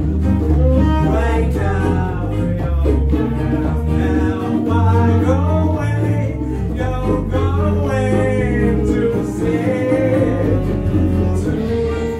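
Live band music: a woman singing with acoustic guitars, bass and hand percussion.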